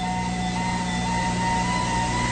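A steady low electronic hum under several held, slightly wavering higher tones, a sustained drone with no beat.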